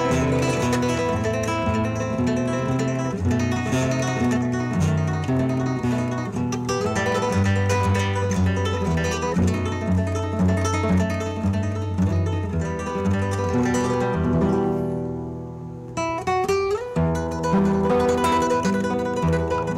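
Solo nylon-string classical guitar played fingerstyle: a continuous melody over plucked bass notes. About fifteen seconds in it fades to a soft moment, then a quick upward run leads into the next phrase.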